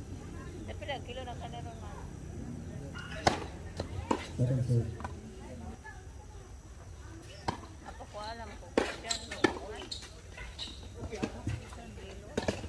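Tennis ball struck by rackets and bouncing on a hard court during a doubles rally: sharp single pops at irregular gaps of a second or more, starting about three seconds in.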